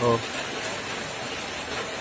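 Steady hiss of falling rain.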